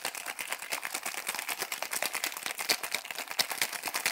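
Ice rattling rapidly against the walls of a metal cocktail shaker being shaken hard, a dense, steady clatter of small hits all through.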